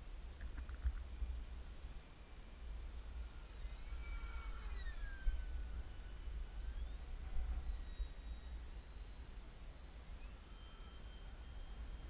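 Wind buffeting the microphone in a steady low rumble, with the faint distant whine of a stock ParkZone Habu's electric ducted fan on a 4S LiPo above it. The whine glides down in pitch about four seconds in, rises again around seven seconds and holds steady near the end.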